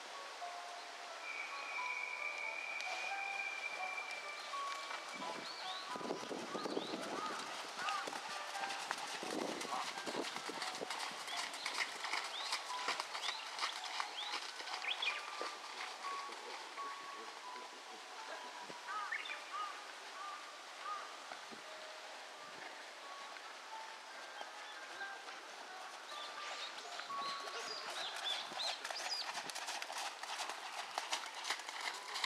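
A Thoroughbred horse trotting under a rider on a sand arena, its hoofbeats coming as soft, repeated thuds. Many short, high chirps sound over the hoofbeats.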